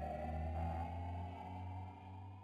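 Electronic logo-intro sound effect: a sustained low drone under a slowly rising held tone, slowly dying away.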